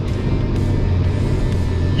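4WD ute engine pulling hard at full throttle up a soft sand dune, a steady low drone heard from inside the cab, under background music.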